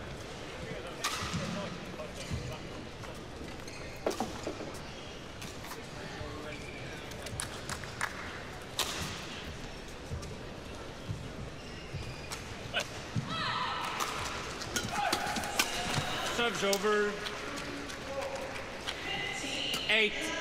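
Indoor badminton hall: arena ambience with scattered knocks for the first half, then from about 13 seconds in a short doubles rally, with racket strokes on the shuttlecock and shoe squeaks on the court. Voices are heard near the end.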